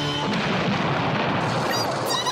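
Cartoon explosion sound effect: a long noisy blast that takes over from a held electric guitar chord about a quarter-second in.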